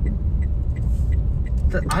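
Car cabin road noise while driving: a steady low rumble from engine and tyres, with a faint ticking about three times a second from the turn indicator as the car turns.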